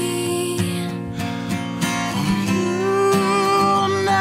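Takamine acoustic guitar strummed, with a voice holding long sung notes over it; the melody moves up to a new held note about two seconds in.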